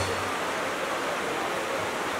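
Steady, even hiss of background noise, with no music or voice.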